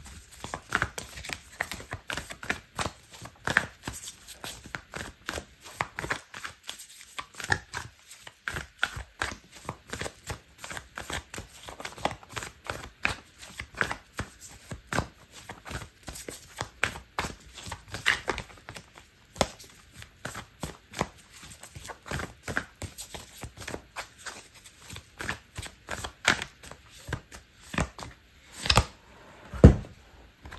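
An oracle card deck shuffled by hand: a long run of quick, irregular card slaps and clicks, several a second, with a few louder slaps in the last few seconds.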